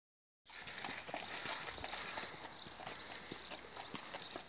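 A pony's hooves clip-clopping at a walk on a gravel track as it pulls a carriage: a run of short, uneven knocks that starts about half a second in.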